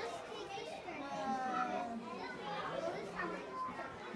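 Faint voices of children talking in the background, with no one speaking close by.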